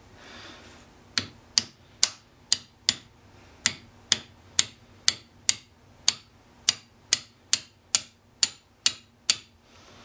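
Hammer lightly tapping a metal rod, about two even metallic taps a second, driving a composite (APCP) propellant grain out of its motor casing. The tapping starts about a second in and stops shortly before the end.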